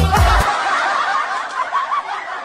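Music with a heavy beat cuts off about half a second in. It gives way to a high, wavering snicker of laughter that slowly fades.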